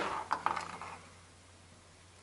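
Handling noise: a few light clicks and knocks in the first second as two small dome tweeters and their test wires are picked up off a table.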